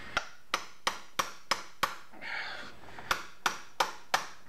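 Hammer blows on a steel tool seated in a seized, rusted Allen-head bolt, about three sharp metallic taps a second: six, a short pause, then three more. The bolt heads are rounding out and will not turn.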